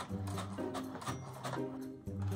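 Background music playing with a steady low note under it.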